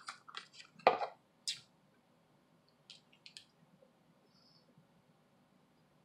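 Faint, sparse mouth sounds of someone chewing beef jerky: a few short wet clicks and smacks in the first second and again around three seconds in, with a brief hum and a breath between them.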